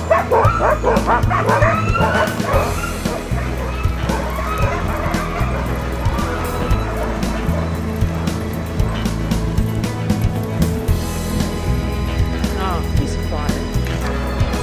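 A pack of sled dogs barking and yipping together, the chorus dying away after the first few seconds, over background music that runs throughout.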